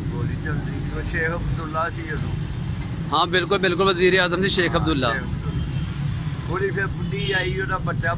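A man speaking in three short spells with pauses between, over a steady low background rumble.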